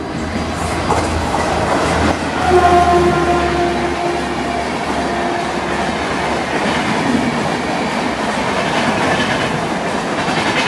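Duronto Express coaches behind a WAP-4 electric locomotive rushing past close by, with a steady roar of wheels on rail and rhythmic clickety-clack over the rail joints. About two and a half seconds in, the locomotive's horn sounds for a couple of seconds at a lower pitch as it moves away.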